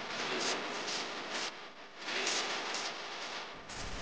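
Football stadium crowd cheering: a dense roar of many voices that swells and dips, as fans celebrate a goal. A low thud comes just before the end.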